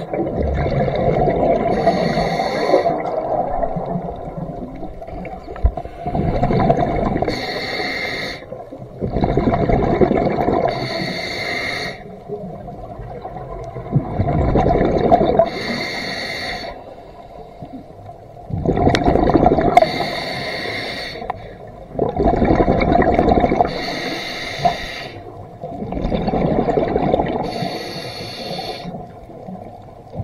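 Scuba diver breathing through a regulator underwater: a short hiss on each inhale, then a longer burst of bubbling on each exhale, about one breath every four seconds.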